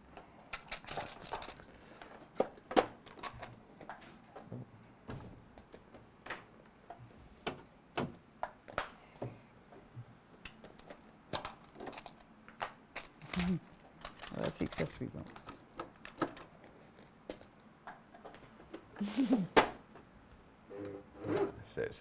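Irregular clicks, knocks and fabric rustling as hands work the fabric and controls of a Britannia CS4000+ coverstitch machine. The machine is not stitching: its safety catch stops it from sewing while a cover is open. A few words are murmured about halfway through and again near the end.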